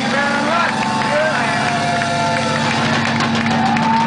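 Live rock band playing: a steady low drone held under wavering, sliding high tones, with little drumming.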